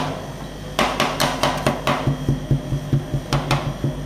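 Steel spatulas chopping dragon fruit into cream base on a steel rolled-ice-cream cold plate, with sharp metal-on-metal clacks. A quick run of about five comes about a second in, and two more come near the end.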